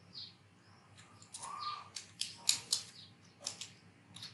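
Computer keyboard keys clicking in a short run of keystrokes in the middle, as a few characters are typed. There are a few faint, short, high bird chirps in the background.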